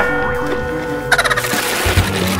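An added comedy sound effect: a steady held tone, with a short rapid rattling burst about a second in.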